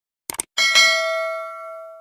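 Subscribe-animation sound effect: two quick clicks, then a notification bell ding about half a second in that rings on and fades slowly.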